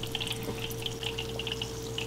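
Coca-Cola coming to a boil in a saucepan: small bubbles popping and crackling irregularly, over a faint steady hum.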